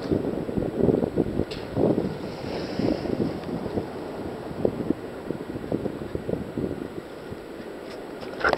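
Wind buffeting the microphone of a deck-mounted camera, making an uneven, gusty rumble over choppy surf water sloshing around a sea kayak.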